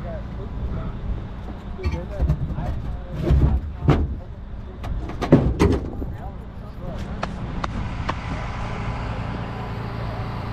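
Rollback tow truck's engine idling steadily, with a few sharp knocks and clunks between about two and six seconds in, the loudest near three and a half and five and a half seconds, as cinder blocks are handled.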